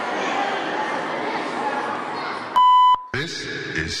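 Hubbub of spectators' voices in a sports hall, then a single loud, steady electronic beep about two and a half seconds in, lasting about a third of a second, followed just after by the cheer routine's music starting up.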